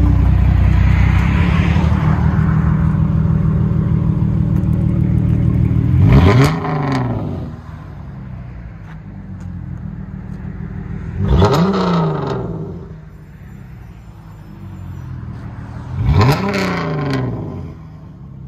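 2012 Dodge Charger's 3.6L Pentastar V6, straight-piped with high-flow cats and the muffler and resonators deleted, idling, then revved three times about five seconds apart. Each rev rises sharply and falls back to idle.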